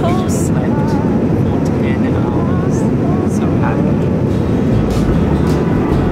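Steady roar of a Boeing 787-9 airliner cabin in cruise: engine and airflow noise heard from inside the cabin, with a few brief voice fragments over it.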